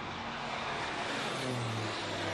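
Propeller-driven light aircraft flying low past, a steady engine drone over a rush of air, its pitch falling near the end as it goes by.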